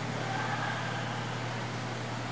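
Indoor roller hockey rink ambience: a steady low hum under a faint hiss, with faint distant sounds of the play at the far end of the rink.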